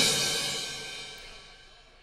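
Cymbal crash ringing out and fading away over about two seconds.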